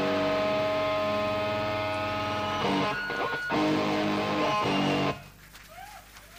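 Distorted electric guitars holding ringing chords at the close of a live crust punk song. A brief break and chord change come about three seconds in, then everything stops abruptly about five seconds in.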